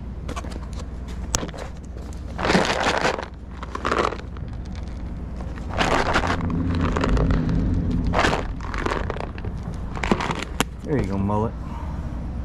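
A plastic tub of dry cat treats shaken and rattled in several short bursts as treats are shaken out onto a wooden bench. A short voice sound comes near the end.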